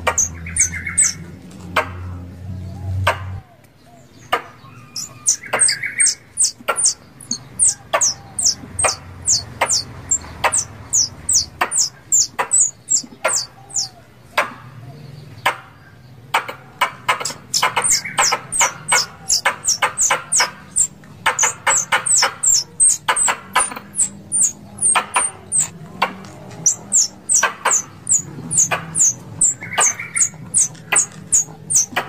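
Plantain squirrel (tupai kelapa) calling: runs of sharp clicks and short, high-pitched falling chips, several a second, with brief pauses between runs. It is a call of the kind used as a hunting lure to draw squirrels in.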